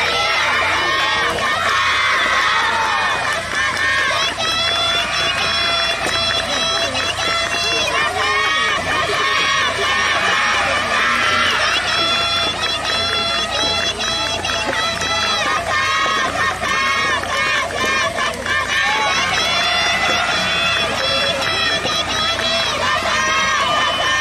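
A crowd of high-pitched voices shouting and calling out together without a break, in many overlapping cheers and chants.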